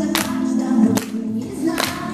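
A group of young children singing a song with a musical backing track, with a sharp beat striking about every 0.8 seconds.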